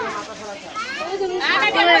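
Young children's voices chattering and calling out, mixed with some adult speech, loudest near the end.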